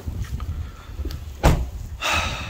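Low rumbling handling and wind noise on a moving microphone, with one sharp thump about one and a half seconds in.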